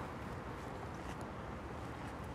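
Faint, steady outdoor background noise: a low rumble under an even hiss, with no distinct events.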